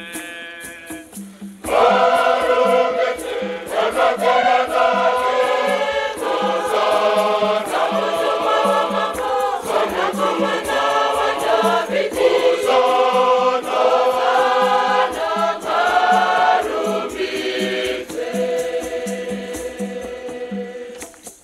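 Large choir singing a Shona Catholic hymn, with hand rattles keeping a steady beat. A single voice sings softly at first, and the full choir comes in loudly about two seconds in.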